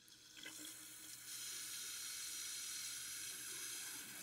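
Water tap running into a sink, the flow swelling up over the first second and then running steadily.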